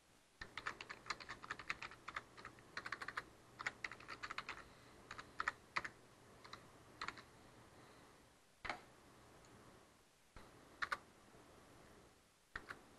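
Computer keyboard typing, faint: quick runs of keystrokes for the first several seconds, then a few scattered single key presses.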